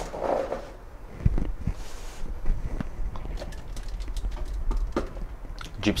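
Collectible figures being shifted by hand on a display-cabinet shelf: a scatter of light knocks and clicks, with a heavier knock about a second in.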